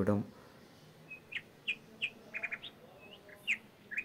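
A small bird chirping: about a dozen short, high chirps starting about a second in, some in quick runs of three or four.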